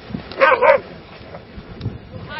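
A dog barking twice in quick succession, a short loud double bark about half a second in.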